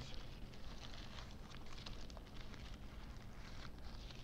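Faint, irregular crackles and small clicks of a fast-food burger and its paper wrapper being handled and pulled apart by hand.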